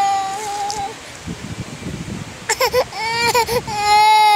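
A tired toddler crying: a long wail that breaks off about a second in, a short pause, then a few choppy sobs and a new long wail near the end.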